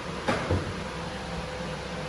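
Steady low hum of a running machine, with two light knocks about a quarter second apart shortly after the start.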